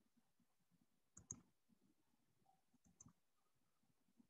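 Near silence broken by two faint double clicks, one just over a second in and one about three seconds in.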